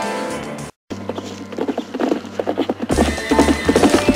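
Television soundtrack: a music cue ends at an abrupt edit with a moment of dead silence, then a fast, uneven run of clopping knocks over a low hum, getting louder near the end.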